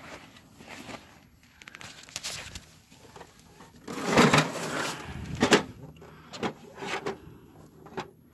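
Plastic knocks and scraping as a discarded inkjet printer is handled and its lid lifted: a longer scrape about four seconds in, then a few sharp knocks.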